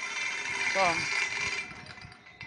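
A metal gate being pushed shut, a grinding, scraping rattle with a high ringing note in it that stops shortly before the end.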